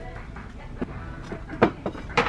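Ceramic bowls clinking and knocking lightly as they are handled and set down on a store shelf: a few short, sharp knocks in the second half, the sharpest about a second and a half in.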